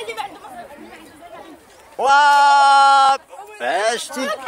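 A loud, steady buzzing tone held at one pitch for about a second, starting about two seconds in with a quick upward slide; children's voices around it.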